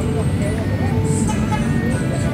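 Busy outdoor market ambience: indistinct voices in the background over a steady rumble of road traffic.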